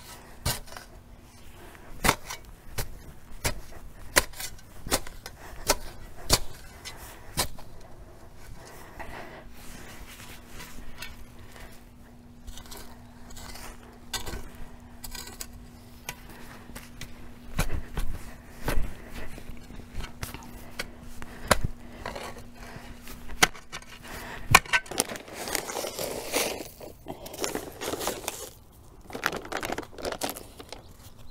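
Shovel blade being driven and scraped into mulch-covered soil while digging holes: a run of sharp crunching strikes, less than a second apart, over a faint steady hum. Near the end the strikes give way to a louder rustling noise.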